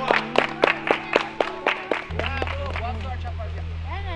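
A crowd clapping in a quick, even rhythm, several claps a second, for about two seconds, over background music. About two seconds in, the music's bass comes up strongly, with a few voices over it.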